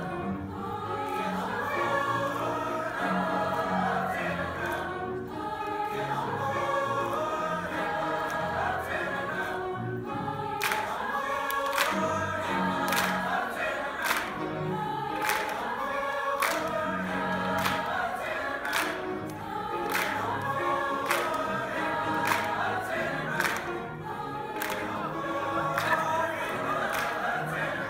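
Mixed-voice high school choir singing in harmony. About ten seconds in, the singers start clapping on the beat, roughly two claps a second, over the singing.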